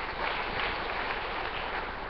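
An audience clapping steadily.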